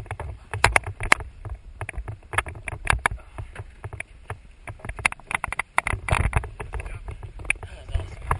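Irregular knocks, clicks and rustling of a bundled parachute canopy and rig rubbing and bumping against a head-mounted camera as it is carried and set on a truck bed, over a low wind rumble on the microphone.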